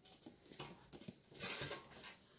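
A cardboard game box being handled and turned over in the hands: a few faint taps, then a short scraping rustle about one and a half seconds in.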